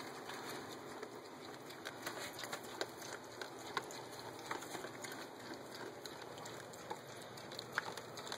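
Faint rustling and scattered small clicks of piglets moving about and rooting in straw bedding around a plastic food bowl.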